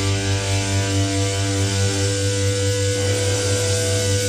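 Live rock band's electric guitars and bass letting a chord ring out through their amplifiers: a loud, steady drone of held notes over a deep, gently pulsing amp hum, with no drum beats.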